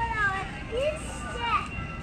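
Young children's voices calling and chattering, several short rising and falling calls, over a steady low background rumble.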